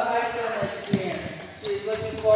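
Several people talking in a large gymnasium, with a few short knocks and clicks among the voices.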